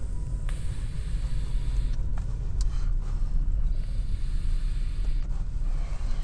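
Steady low rumble of a car cabin while stopped in traffic. Over it come two breathy hisses, one about half a second in and lasting over a second, the other around four seconds in: a person drawing on a small handheld smoker and then breathing the smoke out.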